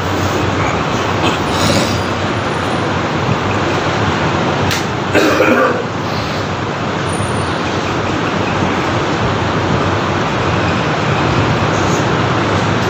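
Steady, loud background noise, an even hiss and rumble with no clear tone. A click and a brief sound come about five seconds in.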